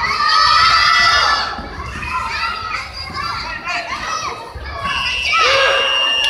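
Many children's voices shouting and calling out together in a large sports hall, loudest at first and then thinning out. A steady high tone comes in near the end.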